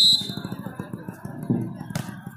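A high whistle blast, the loudest sound here, cuts off just after the start, then indistinct spectator chatter and calls.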